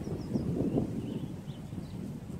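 Wind buffeting the microphone in a steady low rumble, with a few faint, short, high bird chirps.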